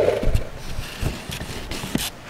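Handling noise from a hand-held camera being moved and repositioned: a few irregular low bumps and rubbing on the microphone.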